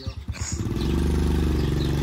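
Small step-through motorcycle engine pulsing at low revs, then revving up about half a second in and holding a steady, higher note as the bike pulls away across the grass.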